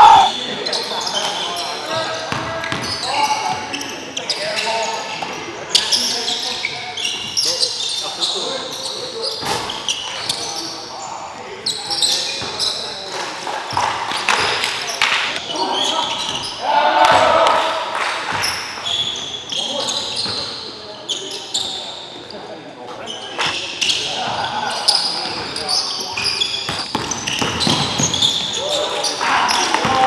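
Basketball bouncing on a hardwood gym floor during live play, with players' voices calling out, all echoing in the hall.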